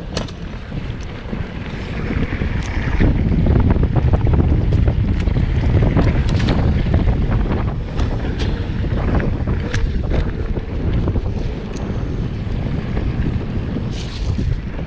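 Wind buffeting a chest-mounted action camera's microphone on a fast mountain-bike descent of a dirt trail, with a low rumble of tyres over the ground. Scattered sharp clacks and knocks come through as the bike rattles over bumps, and the rush is loudest a few seconds in.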